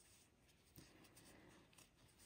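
Near silence, with faint rubbing of yarn being worked on a metal crochet hook.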